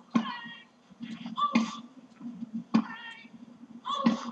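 A short, high-pitched voice-like call, repeated about three times roughly every second and a half, like the 'hello' repeated just before and after.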